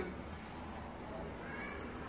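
Faint background hiss of the recording during a pause in a man's speech, with a faint, brief high-pitched rising sound near the end.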